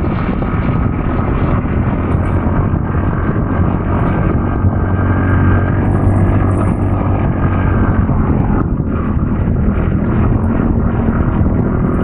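Motorcycle engine running steadily under way, mixed with wind noise on the microphone.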